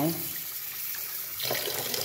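Kitchen tap running water over a handful of soaked sea moss held in the hand, splashing down into a metal bowl of water in the sink. The running water is a steady hiss, a little louder near the end.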